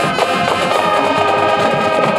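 High school marching band playing: the brass holds steady chords over drum-line percussion.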